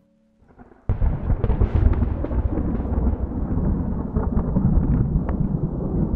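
Thunder: a loud, deep rumble that breaks in suddenly about a second in and keeps rolling, with a few sharp crackles.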